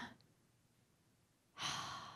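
Near silence, then about one and a half seconds in a woman's audible breath, a sigh, close into a handheld microphone, fading out.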